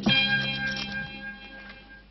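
The closing chord of a TV news opening theme: a chord struck once and left to ring, its steady tones fading away over about two seconds.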